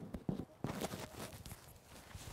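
Handling noise from a clip-on microphone being adjusted at a shirt collar: scattered soft rustles and light knocks.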